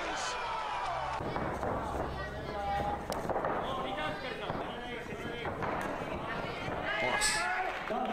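Men's voices shouting and calling out over arena background noise, with a few short sharp smacks.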